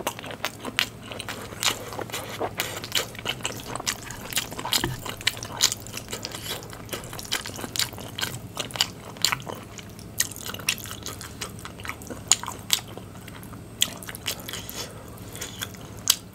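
Close-miked chewing of spicy stir-fried noodles with melted cheese and corn: irregular wet mouth smacks and clicks.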